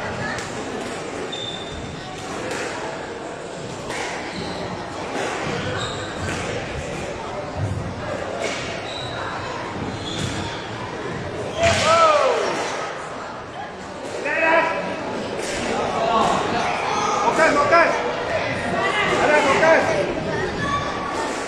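Squash rally: a squash ball struck by rackets and hitting the court walls and floor, sharp strikes about once a second that echo around the court.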